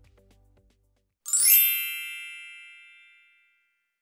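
A bright chime sound effect about a second in: a quick upward shimmer and then a ringing ding that dies away over about two seconds. A faint tail of background music fades out just before it.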